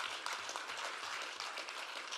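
Audience applauding steadily: many hands clapping at once in a meeting hall.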